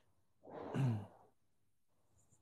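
A man's single sigh: a breathy exhale that drops in pitch, starting about half a second in and lasting under a second.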